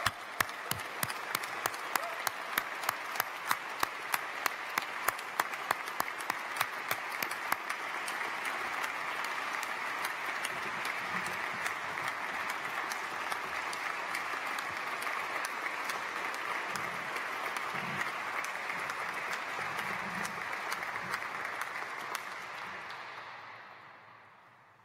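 An audience applauding steadily, with one pair of hands clapping close by and standing out as sharp, regular claps for roughly the first eight seconds. The applause dies away near the end.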